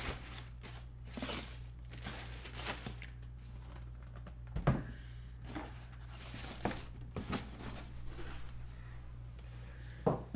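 Plastic boot bags crinkling and cardboard packaging rustling as boots are unwrapped and lifted out of their box, in short intermittent bursts. A single thump comes a little under five seconds in, over a steady low hum.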